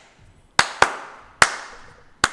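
Three sharp hand claps: two in quick succession a little over half a second in, and a third about half a second later. Each has a short fading tail.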